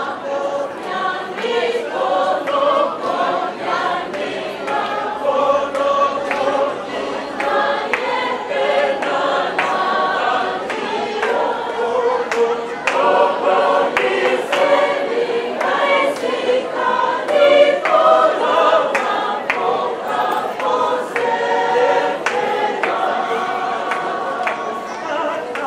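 A choir singing a church song, with sharp beats sounding through the singing.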